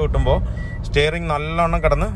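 Road and engine noise inside the cabin of a moving Toyota Innova Crysta: a steady low rumble. A man talks over it in the second half.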